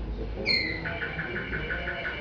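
A canary singing, heard through a television's speaker: a short clear whistled note about half a second in, then a fast, even trill of about ten notes a second.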